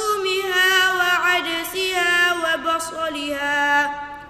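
A boy's voice reciting the Quran in melodic tajweed style, drawing out one long, ornamented line on a single breath that breaks off just before the end.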